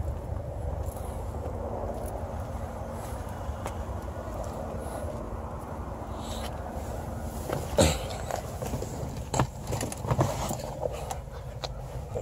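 Footsteps and phone-handling noise over a steady low rumble, with a sharp knock about eight seconds in and a few lighter knocks after it.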